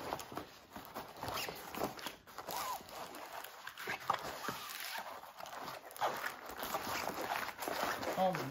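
Paper and plastic film rustling and crinkling in irregular bursts as a rolled diamond-painting canvas is slid out of its paper sleeve and unrolled by hand on a stone countertop.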